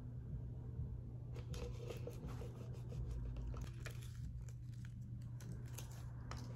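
Faint crinkling and peeling of adhesive vinyl as a small decal is lifted off its backing sheet, in scattered light ticks and rustles over a steady low hum.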